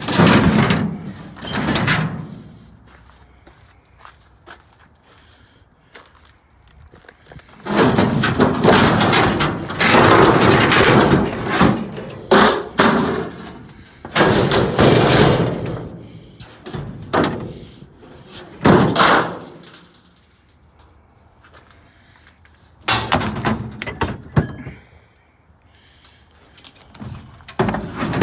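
Thin steel sheet-metal cabinet panels being wrenched, bent and knocked about, making rattling bangs and clatter in several bursts, the longest stretch lasting several seconds.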